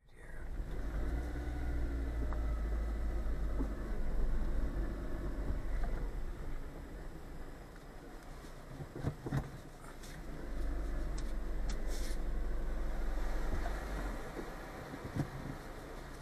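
Car cabin noise while driving, picked up by a dash cam's built-in microphone: a steady low road and engine rumble that eases off for a couple of seconds in the middle, with a few light clicks and knocks.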